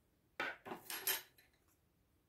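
Small metal scissors picked up and opened: a quick run of light metallic clicks and scrapes lasting about a second.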